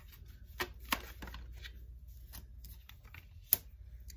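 Tarot cards being handled and shuffled in the hand, with a few light card clicks about a second in. Near the end a single sharp slap comes as a card is laid down on a stone tabletop.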